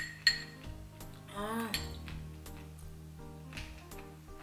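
A metal spoon clinks sharply against a small glass while scooping yogurt, once just after the start, over background music.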